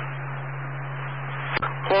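Open fire-radio channel heard through a scanner feed: steady hiss over a low hum during a pause in a transmission. There is a single sharp click about one and a half seconds in, and a man's voice resumes at the end.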